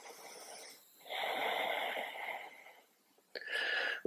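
A yoga instructor's audible breathing, held in a standing pose: one long breath of about a second and a half, then a shorter one near the end.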